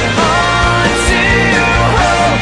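Recorded emo pop-rock song: a male voice singing over a full band with a steady drum beat.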